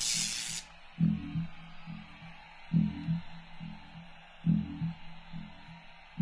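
Background music: a whooshing noise sweep that fades out about half a second in, then a slow, bass-heavy beat with a low hit about every second and three-quarters.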